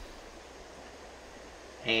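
A steady, faint hiss with no distinct events, and a man's voice beginning near the end.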